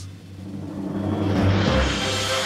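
Cartoon score with a timpani roll, under a whooshing sound effect of skis sliding downhill that swells over the first second and a half and ends in a low rumble.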